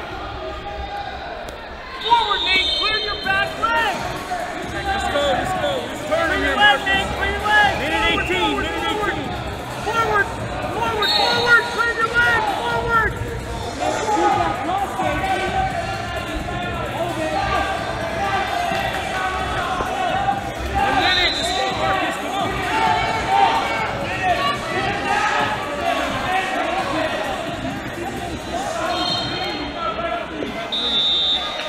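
Many indistinct voices and shouts echoing in a large wrestling tournament hall, with scattered thuds of wrestlers on the mat and a few brief high-pitched squeaks.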